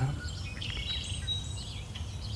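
Small birds chirping in the background, with a short rapid trill about half a second to a second in, over a low steady hum.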